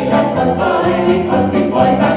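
Mixed vocal ensemble of men and women singing together in harmony, holding chords that shift every half second or so.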